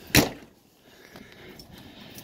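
A door on a travel trailer being shut with a single sharp slam just after the start, followed by faint handling noise.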